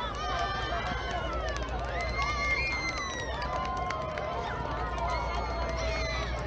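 Children's voices shouting and calling across an open field, several overlapping, with one long high call held for about a second and a half around two seconds in.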